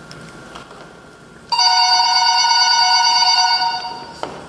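Telephone ringing: one loud trilling ring of about two seconds that starts about a second and a half in.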